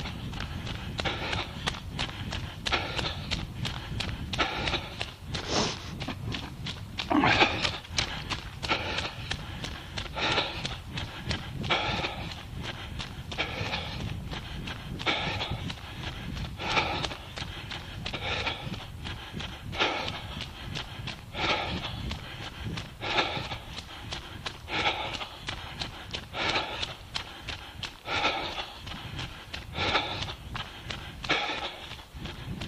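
A runner's heavy breathing, with a loud breath about every second and a half, over the regular patter of running footsteps on the path.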